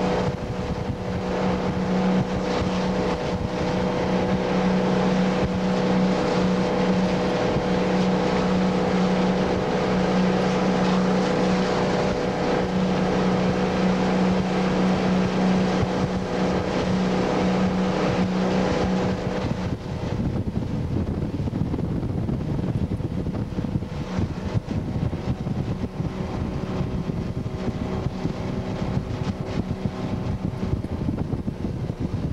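Motor of a ski boat towing a barefoot skier, running as a steady drone under wind and water rush. About twenty seconds in, the engine hum drops away, leaving only the wind and water noise.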